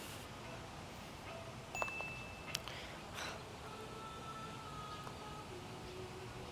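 Faint chime-like ringing, a few separate tones of different pitch, each held for about a second, with two sharp clicks about two seconds in.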